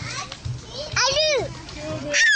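A toddler's wordless babbled cry, one high rising-and-falling utterance about a second in, over faint background voices.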